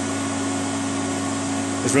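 Steady whir of power-supply cooling fans with a low electrical hum, from switch-mode and bench supplies running under heavy load at around their rated 43 amps.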